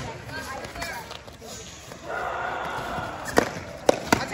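Foam sword strikes: sharp slaps as the padded swords hit, once at the start and twice close together near the end, the loudest sounds here. Voices carry through the big hall in between.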